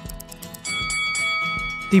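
Background music with a rapid clock-like ticking, then about two-thirds of a second in a bell chime rings out and holds for over a second: a countdown timer signalling that the thinking time is up.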